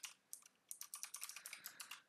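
Faint typing on a computer keyboard: a couple of keystrokes, a brief pause, then a quick run of about a dozen keystrokes.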